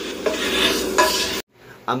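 A utensil scraping cooked eggs out of a frying pan into a plastic container, with small clinks against the pan. It cuts off suddenly about a second and a half in.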